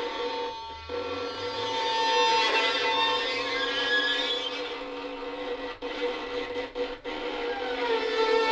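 Two violins bowed together in a duet, holding long sustained notes against each other, with a short break just under a second in and a few brief breaks near the end.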